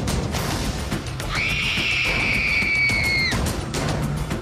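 A girl's long, high-pitched scream, rising at its start and held for about two seconds from about a second in, over tense background music with percussive hits.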